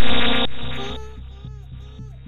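Electronic sound played by the computer once the malware runs, thin and muffled as from a low-quality audio file: a loud blast that starts suddenly and fades over about a second, then short gliding chirps about twice a second over a steady low hum.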